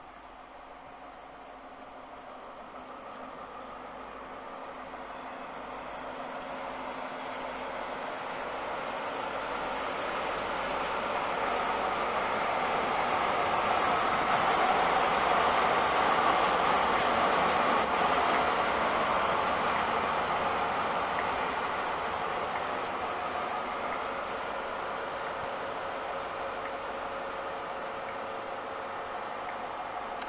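A Class 43 HST (InterCity 125) diesel power car and its coaches running through a station without stopping: engine and wheel-on-rail noise build steadily as it approaches, peak about halfway as the power car goes by, then fade slowly as the coaches and rear power car pass.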